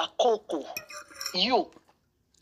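A person talking in short phrases, with a few light clinks of tableware about the middle; the voice stops near the end.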